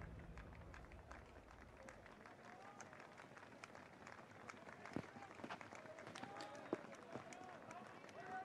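Faint hoofbeats of trotting harness horses, light irregular clicks, with faint distant voices; the tail of background music fades out in the first two seconds.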